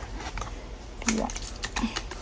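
Silicone mold being flexed and peeled off a cured resin casting, giving a run of short, sharp clicks and crackles.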